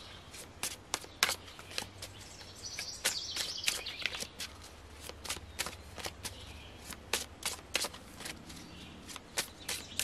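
A deck of tarot cards shuffled and handled by hand: a run of quick, irregular card clicks and flutters. A bird chirps briefly about three seconds in.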